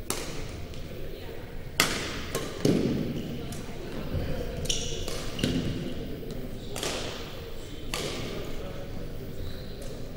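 Badminton racket strikes on a shuttlecock in an indoor gym, a series of sharp pops with a hall echo, a few close together about two seconds in and two more later on. Brief high squeaks, like sneakers on the court, come near the middle.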